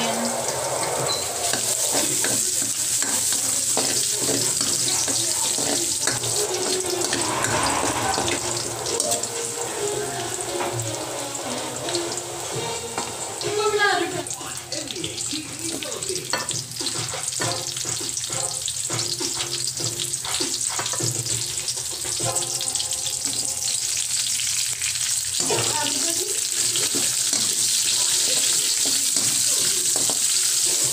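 Minced garlic sizzling steadily in hot oil in a steel wok, with onion chunks added partway through.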